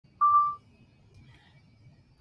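A single short electronic beep: one steady high tone lasting under half a second.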